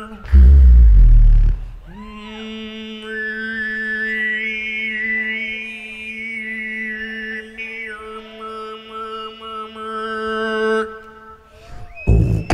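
A beatboxer's mouth-made music into a microphone. It opens with a deep booming bass note, then holds one steady vocal drone for about nine seconds while a higher melody moves above it. The drone stops about a second before the end.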